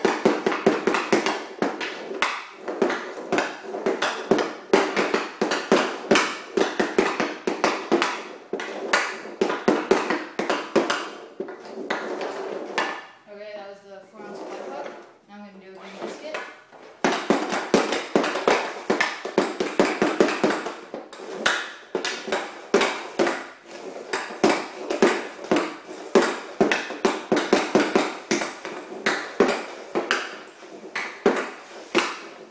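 Hockey stick blade stickhandling a puck on plastic dryland flooring tiles: a rapid, continuous stream of clacks and clicks as the blade taps the puck and the tiles. There is a pause about 13 seconds in, and the stickhandling resumes about four seconds later.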